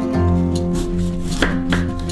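Kitchen knife slicing through an apple and knocking on a wooden cutting board, two knocks close together about a second and a half in, over background music with sustained tones.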